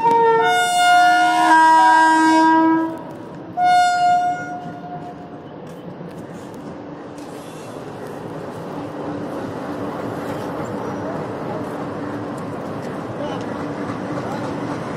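Electric train horn sounding twice: a long chord of several tones lasting about three seconds, then a shorter blast a second later. After it comes the steady, slowly building rumble of a train approaching on the tracks.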